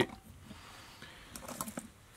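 Quiet room with a few faint, light ticks about a second and a half in, from hands handling tools and materials at a fly-tying vise.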